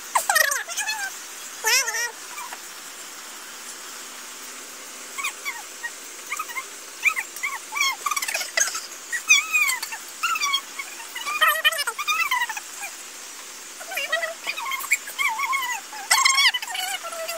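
A dog whimpering and whining in bouts of short, high-pitched cries that rise and fall.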